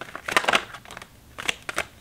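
A deck of tarot cards being handled and shuffled in the hands, the cards snapping and slapping against each other. A cluster of sharp card noises comes about half a second in, and a few more follow near the end.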